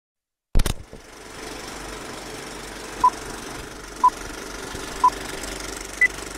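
Old film projector sound effect: a click as it starts, then a steady rattling run with crackle. Over it come three short beeps one second apart and a higher-pitched beep right at the end, a film-leader countdown.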